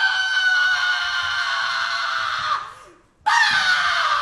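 A performer's long, high-pitched scream held on one pitch, fading out shortly before three seconds in. After a brief silence a second scream begins and sinks slightly in pitch.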